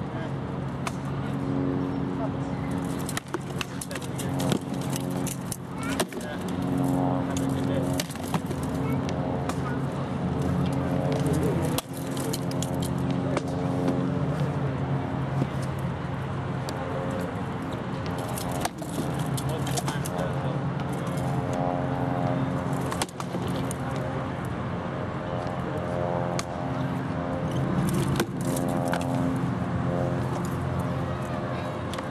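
Rattan weapons striking wooden shields and armour in SCA armoured sparring: sharp cracks scattered through, over a steady low hum and indistinct background talk.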